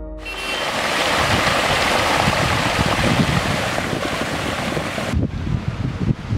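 Storm floodwater pouring over a ledge and rushing down a flooded street: a loud, steady rush. It cuts off suddenly about five seconds in, giving way to quieter, uneven outdoor noise.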